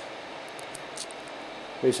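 A few faint light metallic clicks as the zinc-plated ball pin of a quick-release ball joint is handled and pushed back into its socket, over a steady background hiss.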